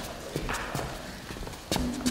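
Footsteps on a wooden floor: a few separate, irregularly spaced knocks.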